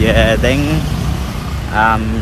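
Steady low rumble of road traffic, under a man's voice at the start and again near the end.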